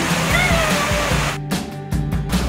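Steady rush of river rapids under background music. Near the end the water sound drops away for about half a second.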